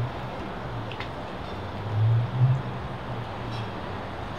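Low, steady hum of an idling vehicle engine that swells louder for about half a second around two seconds in, with a faint click about a second in.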